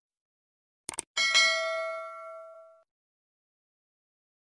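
Quick clicks followed by one bell ding that rings out and fades over about a second and a half: the click-and-notification-bell sound effect of a subscribe-button animation.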